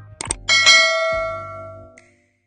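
Subscribe-button sound effect: two quick clicks, then a bright bell ding that rings out and fades over about a second and a half, over background music with a repeating bass line.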